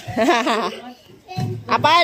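Children's voices at play, with a high, wavering sing-song voice about half a second in and another held high voice starting near the end.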